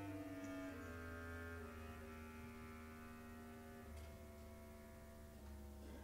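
Soft orchestral passage in the opera: quiet held chords with cellos and double basses sustaining a low bass line, the harmony shifting a few times.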